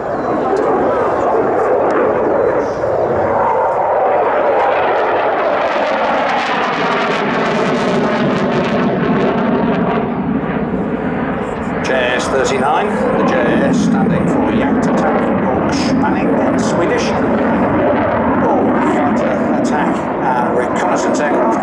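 Saab JAS 39C Gripen fighter's single turbofan jet engine, heard from the ground as the jet flies its display. The noise stays loud throughout, with a sweeping whoosh as it passes about seven to nine seconds in.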